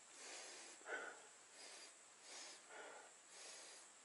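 A person sniffing several times in short, faint breaths close to the microphone, smelling a rotted neungi mushroom.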